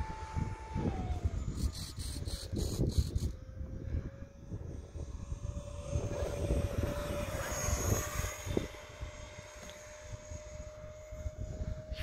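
FMS 50 mm electric ducted fan on a 4S battery, driving an Easy Iskra model jet in flight: a thin steady whine that drops in pitch over the first couple of seconds, then rises slowly, over a low rumble.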